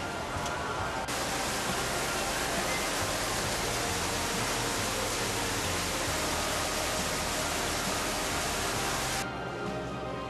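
Background music under a loud, steady rushing hiss. The hiss starts suddenly about a second in and cuts off abruptly near the end.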